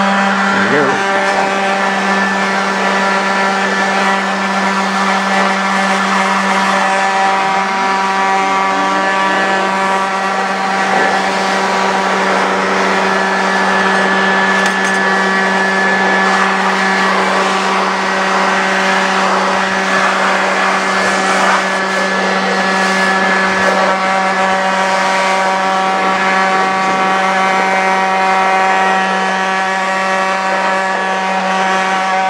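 Electric leaf blower running steadily at full power: a constant motor whine over a loud rush of air, blowing dust out of an open server case. It is heard right at the blower's body.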